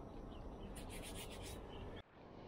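Brief scraping and rustling for about a second as bread is set on a wire toaster rack over a camping gas burner, over a low steady rumble.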